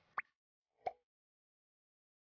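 Two short pop sound effects over dead silence: a quick rising 'bloop' just after the start, then a single short pop a little under a second in.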